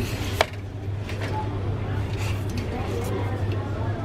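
Aluminium beer cans handled on a store shelf, with one sharp clink about half a second in and a few lighter knocks later, over a steady low hum.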